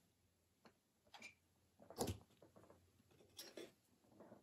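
Near silence with a few faint rustles and soft taps from sticker sheets and paper being handled, the clearest about two seconds in.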